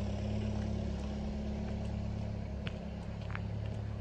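A parked van's engine idling steadily, a low even hum, with two faint clicks in the second half.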